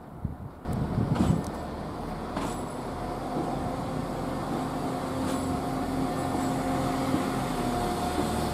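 West Midlands Railway diesel multiple unit passing close by. The sound comes in suddenly under a second in, then runs as a steady hum with a couple of held tones, and a few sharp clicks as the wheels cross rail joints.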